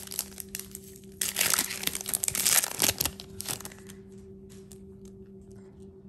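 Wrapper of a basketball trading card pack crinkling and tearing as it is ripped open, loudest in the middle couple of seconds. A few faint ticks follow near the end.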